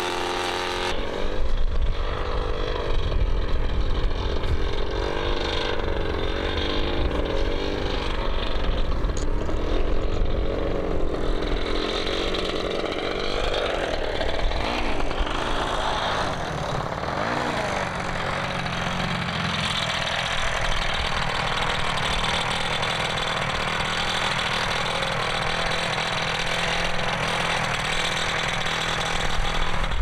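Engine of a paramotor with a small ducted fan, running in flight, its pitch repeatedly rising and falling. It is higher-pitched than a conventional paramotor because the fan turns at higher revolutions. In the last third it settles to a lower, steadier note.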